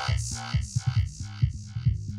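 Breakbeat electronic dance music from a DJ mix: a quick synth riff of short notes, about four a second, over a stepping bassline and drums. The riff's treble fades away as it plays.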